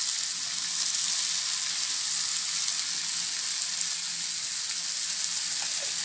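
Paneer, onion, tomato and capsicum sizzling steadily in a hot steel frying pan.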